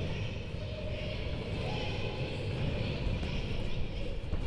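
A large girls' choir sustaining a dense vocal texture without clear pitches, part of a contemporary choral work, over a steady low rumble.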